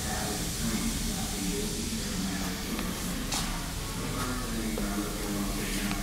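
Hunter OCL400 on-car brake lathe running its self-programming routine: the drive motor turns the hub in short, intermittent spells over a steady hiss and low hum, with a sharp click about three seconds in.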